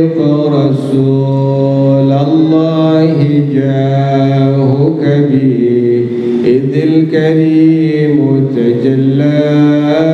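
A man's voice chanting devotionally into a handheld microphone, in long, drawn-out melodic phrases that slide slowly between held notes.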